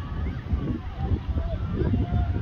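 Wind buffeting the microphone with an uneven low rumble, under faint, distant voices of rugby players calling out on the field.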